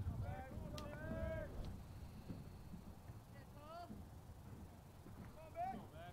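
Faint ballpark ambience: distant voices calling out a few times over a low steady rumble, with a couple of light clicks in the first two seconds.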